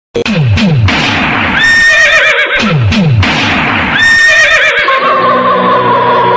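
Electronic DJ intro effects: a run of quick falling pitch sweeps followed by a horse-whinny sample, the pair played twice, then a steady held synth note from about five seconds in.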